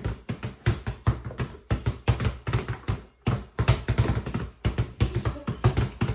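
Two basketballs pounded in hard, fast dribbles on a concrete floor, the bounces overlapping in a rapid, uneven patter of thumps with a short lull about three seconds in.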